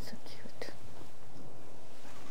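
A few short, soft whispered sounds in the first second, then faint room tone.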